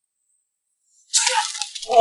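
A sudden loud crack about a second in as a kick snaps a wooden batten, running on into a rattling clatter of the broken wood.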